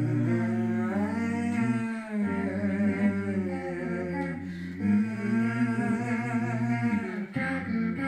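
Layered a cappella voices built on a loop station: hummed and sung parts over a low, sustained vocal drone that drops out briefly twice.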